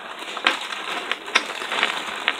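Clear plastic bag rustling and crinkling as a hand rummages through loose plastic game pieces inside it, with a couple of light clicks of pieces knocking together.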